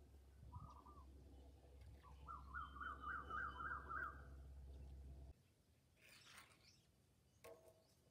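Faint bird calls: a short call near the start, then a quick run of about eight rising-and-falling notes lasting about two seconds. Under the calls a low steady rumble stops abruptly about five seconds in.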